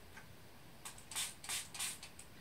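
Small hand-pump spray bottle spritzing liquid onto paper: four quick hisses about a third of a second apart in the second half.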